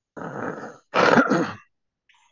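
Two short, rough, unintelligible vocal sounds from a person, the second louder.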